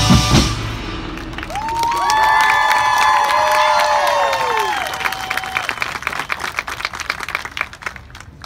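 High school marching band playing: heavy drum hits at the start, then the brass swell in on a held chord that bends downward and drops out. A fast patter of light clicks follows as the sound fades.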